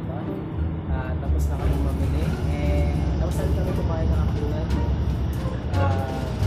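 Steady low rumble of a city bus's engine and road noise, heard from inside the passenger cabin while the bus drives along, with music and voices over it.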